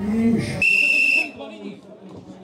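A single short whistle blast, one steady high tone lasting about half a second, starting just over half a second in; a man's voice is heard just before it.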